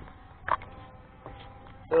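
Faint steady hum of the Aosenma quadcopter's motors and propellers, with one short knock of camera handling about half a second in and a few faint clicks.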